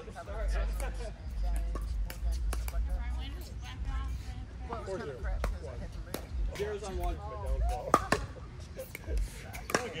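Pickleball rally: repeated sharp pops of paddles striking a hollow plastic pickleball, irregularly spaced, the loudest hit about eight seconds in, with players' voices and a laugh among them.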